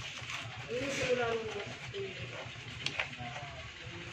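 A person's voice saying a word or two, quieter than the surrounding talk, over a steady low background hum. A single sharp click comes a little before three seconds in.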